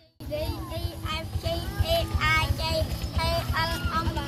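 Many children's high voices calling out together and overlapping, in a sing-song way, over a steady low rumble. The sound cuts in abruptly just after the start.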